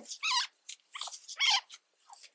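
Several short, high-pitched whines from an animal, with pitch that bends within each whine.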